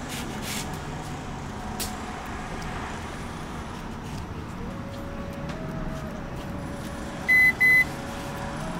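Steady low background hum, then two short, high electronic beeps in quick succession near the end.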